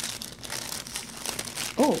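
Translucent paper packet crinkling and rustling in the hands as it is opened and its tape seal peeled off. The crackling is irregular.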